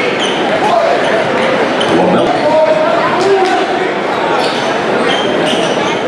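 Live gym sound at a basketball game: crowd and player voices echoing in a large hall, a basketball bouncing on the hardwood floor, and short sneaker squeaks on the court.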